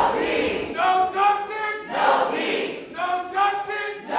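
A group of student protesters singing a protest chant together, held sung lines alternating with rougher shouted ones about every second.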